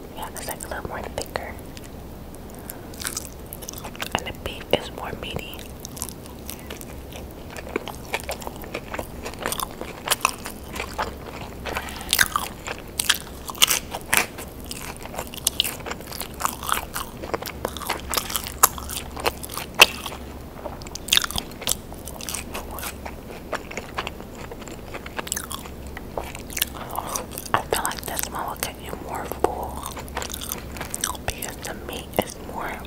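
Close-miked eating: biting into and chewing a cheeseburger and fries, with many sharp, wet mouth clicks and crunches that come thickest around the middle.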